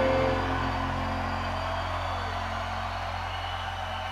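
The band's music stops in the first half-second, leaving faint electric guitar notes fading out over a steady low amplifier hum.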